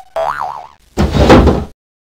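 Added comic sound effects: a short wobbling boing tone, then a loud crash-like thud about a second in that cuts off abruptly, a pratfall effect.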